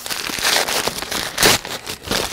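Brown paper bag being crumpled and torn apart by hand, the paper crackling, with a louder burst about one and a half seconds in.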